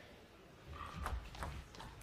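Table tennis ball in play during a rally: a few sharp clicks of the celluloid ball off rubber bats and the table, roughly half a second apart, with dull low thuds underneath.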